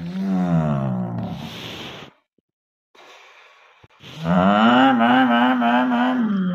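A voice making racing-car engine noises by mouth: a drawn-out vocal drone that slides in pitch for about two seconds and breaks off. It returns about four seconds in, held and wavering, and runs on into the next moment.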